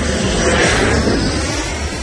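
Airplane fly-by sound effect: a rush of engine noise that swells to its loudest about half a second to a second in and then fades, its pitch sliding down as it passes, over a pulsing electronic beat.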